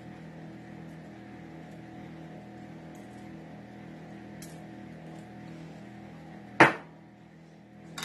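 A steady low kitchen-appliance hum with a few faint light taps as ground black pepper is shaken over raw fish fillets, then one sharp knock or clink about six and a half seconds in.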